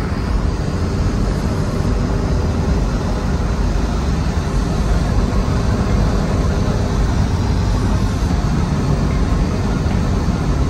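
Porsche 944's four-cylinder engine running at a steady cruise, with tyre and wind noise, heard from inside the cabin.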